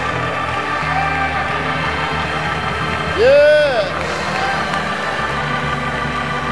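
Sustained gospel music chords held steadily in a church, with one voice calling out briefly a little past halfway, its pitch rising and falling.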